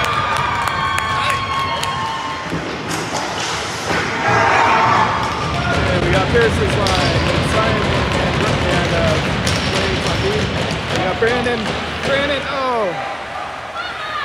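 Ice rink din: spectators' voices shouting and calling over a steady crowd hubbub, with scattered sharp clacks of hockey sticks and puck on the ice and boards.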